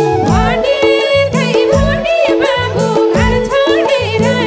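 Live Nepali dohori folk music: madal drum and keyboard keep a steady beat under a sung melody with bending, ornamented notes.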